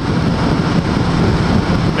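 Honda Shadow 750 V-twin engine running steadily at highway cruising speed, mixed with wind and road noise on the handlebar camera's microphone.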